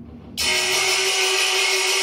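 Percussion music: metal percussion comes in suddenly about half a second in with a bright, sustained, hissing metallic sound over a steady low ringing tone, holding level rather than dying away.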